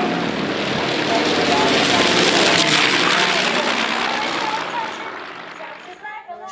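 Propeller warplane flying past, its engine noise swelling to a peak about two and a half seconds in and then fading away, with faint voices underneath.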